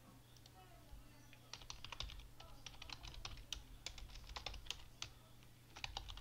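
Typing on a computer keyboard: a quick run of key clicks that starts about a second in and goes on with brief pauses, over a faint steady low hum.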